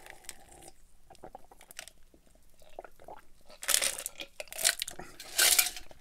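Close-miked mouth sounds of drinking: faint swallows and wet clicks. A few short, louder noisy bursts come about four and five and a half seconds in.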